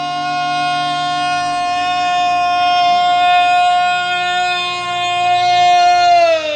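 A man's voice holding one long, high sung note over the ringing of a strummed acoustic guitar chord. The chord dies away near the end, and the note starts sliding down with a wobble right at the end.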